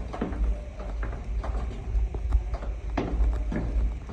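Footsteps on a hard stone floor: a few uneven knocks, over a steady low rumble from the phone being carried along with the walker.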